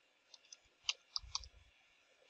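Computer keyboard keys being typed: about five or six short, sharp key clicks, with a low thump under them a little past halfway.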